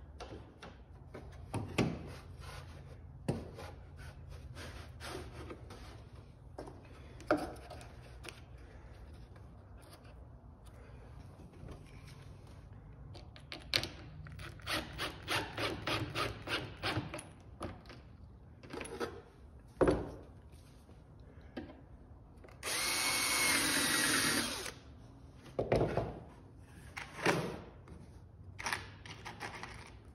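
A power drill runs for about two seconds near the end, among scattered knocks and a quick run of taps from work on the wooden hull.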